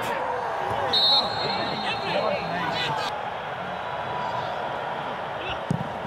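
Pitch-side sound of a football match in an empty stadium: players' faint shouts and calls, with a few thuds of the ball being kicked, over a steady background hum.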